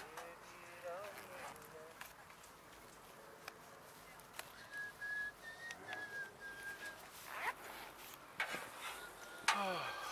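Faint distant voices talking, with a few light clicks and, in the middle, a brief high whistle-like note that breaks off and resumes a few times.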